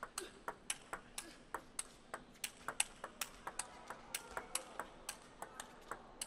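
Table tennis ball struck back and forth in a long rally: sharp, evenly spaced clicks of the ball off the rackets and the table, about three a second.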